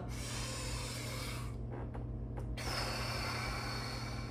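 A woman's deep breaths through the mouth, paced to slow arm sweeps: one long breath, a pause of about a second, then a second long breath.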